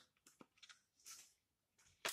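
Near silence, with a few faint, short rustles of hands handling a plant pot of potting soil.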